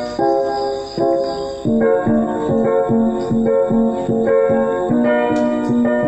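Electronic keyboard playing chords in the key of F with the notes rearranged into a different inversion. The chords are struck in a steady rhythm, about two or three a second, and change a few times.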